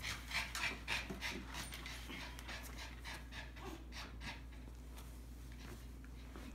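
Dog panting, about three breaths a second, louder in the first two seconds and fainter after.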